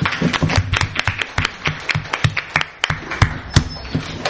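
Audience clapping, with many separate, irregular hand claps heard distinctly rather than as a continuous wash.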